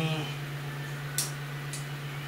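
A steady low hum under a pause in speech, with two short, high, hissy ticks, one about a second in and one near the end.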